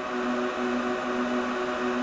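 Cooling fans of a running IBM/Lenovo System x3650 M4 rack server: a steady whir with an even, constant hum.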